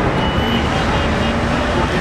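Steady, loud street noise: road traffic with scattered voices of people nearby.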